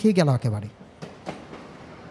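Train running along the rails as a background sound effect: a steady rumble with faint wheel clicks, heard once a voice stops speaking early on.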